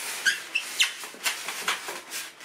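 Polystyrene foam packing blocks squeaking and rubbing as they are lifted out of a cardboard box: a quick run of short squeaks and scraping rustles.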